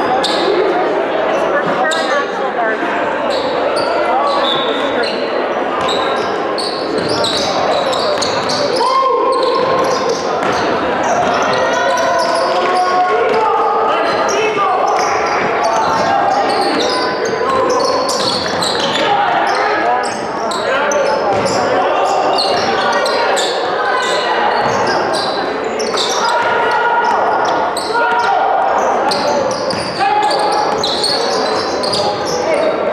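Many voices talking at once in a reverberant gymnasium, with basketballs bouncing on the hardwood floor now and then.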